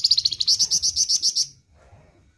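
Caged flamboyan songbird singing a fast burst of about fourteen sharp, high, evenly repeated notes, roughly nine a second, that stops about one and a half seconds in.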